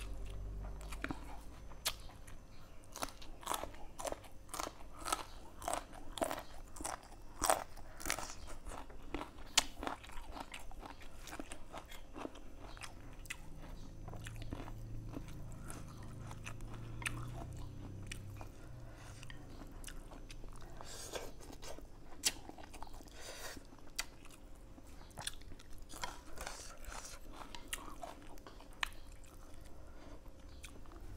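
A person chewing and biting a mouthful of dry rice noodles close to the microphone, with many small crunching clicks, busiest in the first ten seconds.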